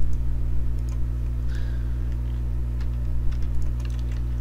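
Steady low electrical hum on the recording, with a few faint scattered clicks from a computer mouse.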